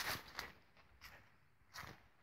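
A few faint footsteps on the ground, one near the start, another soon after and one near the end, with a quiet stretch between them.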